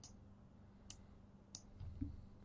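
Near silence: room tone with a faint steady low hum and two faint short clicks about two-thirds of a second apart.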